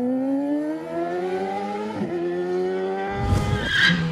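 Motorbike engine sound effect revving up, its pitch rising steadily, dropping slightly as it shifts up a gear about two seconds in and then holding steady. Near the end come two heavy thumps, the second with a sharp crack.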